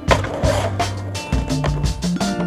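Skateboard landing on concrete after a drop down a stair set: a sharp clack just after the start, followed by a few smaller board knocks, over backing music with a steady bass line.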